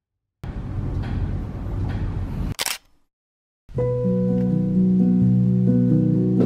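Background music with held, overlapping keyboard-like chords that starts a little past halfway, preceded by about two seconds of low rumbling noise that ends in a short, sharp snap.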